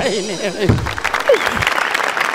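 A person laughing at first, then a studio audience applauding.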